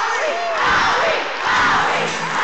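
A large concert crowd screaming and cheering, many voices overlapping at once, swelling twice.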